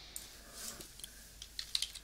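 Typing on a computer keyboard: a quick run of keystrokes, mostly in the second half.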